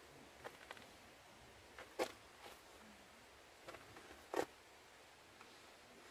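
Faint steady hiss with a handful of short clicks and taps, two of them louder: one about two seconds in and one a little past four seconds.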